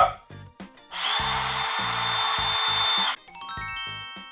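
Milwaukee M12 cordless impact driver run free with no load for about two seconds: a steady high whine that starts and stops sharply on the trigger. Right after it, a falling run of chime notes begins.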